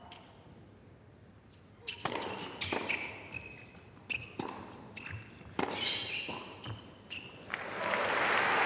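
Tennis rally: a serve and a string of racket strikes on the ball, roughly one a second, with short shoe squeaks on the hard court between hits. Crowd applause starts to rise near the end as the point is won.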